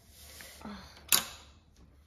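Hand-tool work on a small ATV's brake-lever bracket: rustling of hands and a wrench, with one sharp metallic click about a second in.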